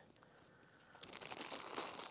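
Faint crinkling of a plastic bag of carrots being handled, starting about a second in after a moment of near silence.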